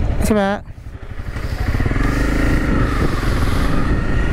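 Motorcycle engine running; it drops back briefly just before a second in, then rises again and holds a steady note for the rest.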